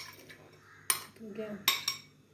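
A metal spoon clinking against a glass bowl while sliced onion is scraped out of it: a sharp clink about a second in and two more in quick succession near the end.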